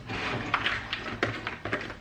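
A few light clicks and knocks as a large plastic water bottle is picked up and handled.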